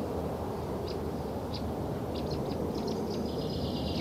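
Steady background noise with a low hum, broken by a few faint, short high chirps and a faint high tone near the end.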